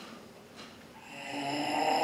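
Quiet room tone, then about a second in a performer's voice starts a long held note that swells in loudness.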